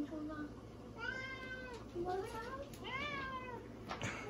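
Domestic tabby cat meowing for food several times, with two longer drawn-out meows about a second and three seconds in and shorter calls between.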